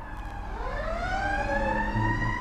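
A siren wailing, its pitch sliding down and then slowly climbing back up.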